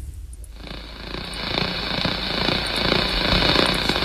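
Snoring on a played-back recording: a long, rough, rattling breath that grows steadily louder.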